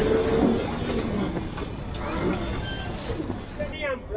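Low vehicle rumble that slowly fades, with a brief voice-like snatch near the end.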